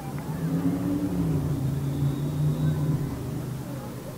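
A motor vehicle engine droning at a low pitch that shifts a little, loudest in the first three seconds and then fading.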